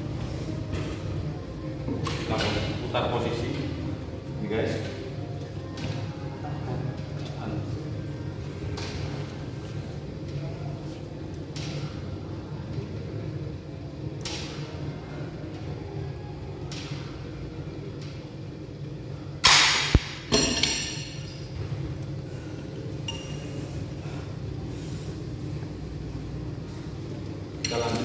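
Scattered metal clinks and knocks from a multi-station home gym's cable and weight-stack machine in use, over a steady low hum. The loudest is a sharp metal clatter about two-thirds of the way through.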